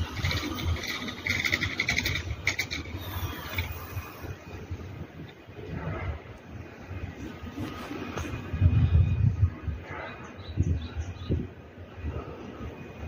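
Wind rumbling on the microphone in uneven gusts, strongest about nine seconds in, over faint outdoor ambience.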